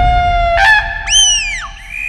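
Dramatic background music score: held notes, then about a second in a high sliding tone that swoops up, arcs over and falls away, followed by a high held note.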